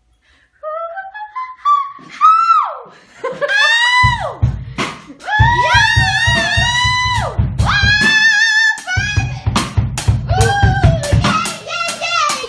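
A voice sings a run climbing up the scale into very high, held notes that bend up and down, an attempt at the singer's highest note. From about four seconds in, a low, rapid pulsing plays underneath.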